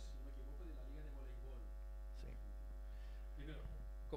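Steady electrical mains hum in the microphone and sound system, with faint, indistinct voices beneath it.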